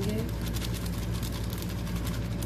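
A thin plastic bag crinkling and rustling as flour mix is poured out of it into a bowl, over a steady low hum.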